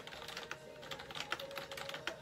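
A quick, irregular run of light clicks and taps, like fingers tapping on a screen or keys, over a faint steady tone.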